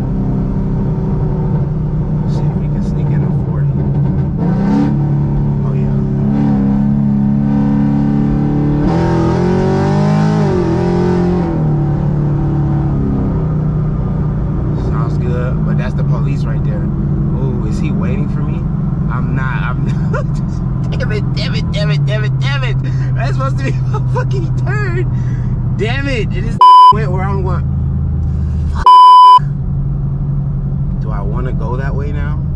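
Tuned 6th-gen Camaro SS V8 heard from inside the cabin, its revs rising for several seconds under hard acceleration and then dropping back to a steady cruising drone. Near the end come two short, loud electronic censor bleeps.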